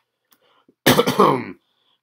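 A person clearing their throat once, about a second in, a single short rough burst.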